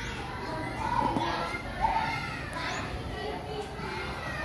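Children's voices calling and shouting while they play, with a few high-pitched calls standing out about one and two seconds in.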